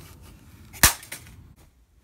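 A phone slammed down onto a hard surface: one sharp crack about a second in.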